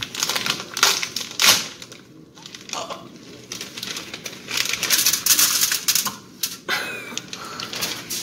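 Crinkling and rustling of cookie packaging being handled and opened, in irregular bursts with sharp clicks; one click about a second and a half in is the loudest.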